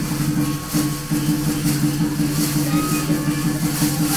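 Loud Chinese dragon-dance music with a steady, driving beat and bright crashes about twice a second.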